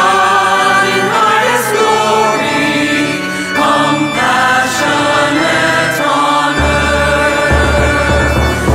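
Slow sacred choral singing with long held notes; a deep bass note comes in about two-thirds of the way through.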